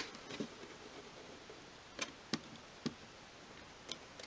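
A few light clicks and taps from handling a small wooden model, with a sharper click right at the start and three smaller ones about two to three seconds in, over quiet room tone.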